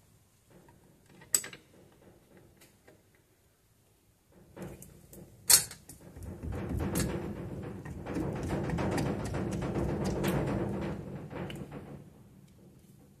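A spanner tightening the steel brake line's flare nut into a drum brake wheel cylinder: a few small metal clicks, a sharp click about halfway, then several seconds of dense, rapid clicking and rattling as the nut is worked.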